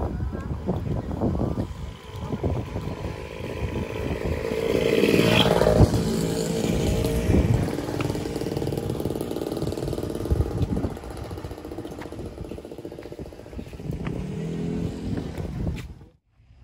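A motorcycle engine passing by, swelling to its loudest about five to six seconds in and then fading, over low outdoor rumble and wind on the microphone.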